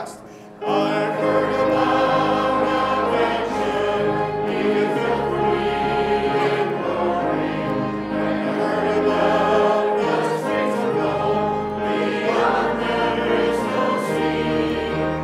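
A group of voices singing a hymn together in church, over steady, sustained low accompaniment notes. The singing comes in about half a second in, after a short lull.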